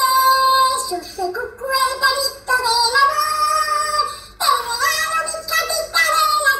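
A high-pitched voice singing a song with long, bending held notes, over music.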